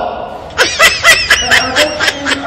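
A person laughing: a quick run of 'ha-ha' laughs, about eight a second, starting about half a second in.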